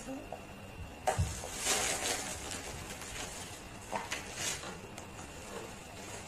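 A child biting and chewing a jianbing crepe rolled around crisp fried dough twists: a few short crunchy rustles and a couple of light clicks.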